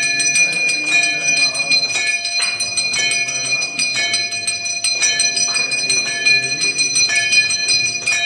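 Large hanging brass temple bell rung continuously by hand during aarti, its clapper striking again and again so the ringing overlaps into an unbroken peal. A small brass hand bell rings along with it.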